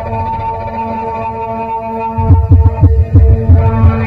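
Live experimental electronic improvisation: a held drone tone, joined in the second half by a quick run of deep low pulses, several a second, with short pitch glides.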